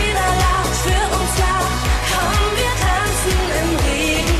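Upbeat Schlager-pop song with a steady kick drum about twice a second and a woman singing over it.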